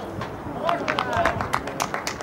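Men's voices shouting on a football pitch, with several sharp knocks in the second half.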